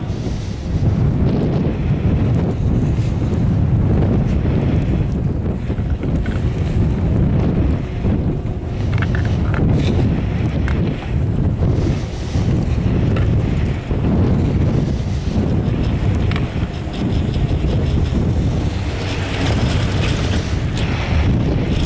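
Wind buffeting the microphone on an open chairlift, a loud low rumble that swells and dips in gusts.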